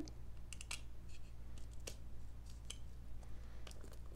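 Faint, scattered light clicks and taps of a hard plastic card jewel case being handled and worked at with a knife, the case stuck shut.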